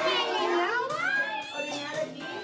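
A young child's high voice calling out, its pitch sliding up and down, over background music.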